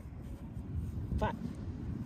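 A woman's voice says one counted word about a second in, over a steady low rumble of wind buffeting the microphone.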